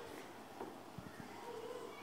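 A quiet lull on a performance stage: two soft low thumps about a second in, and a faint short hummed voice towards the end.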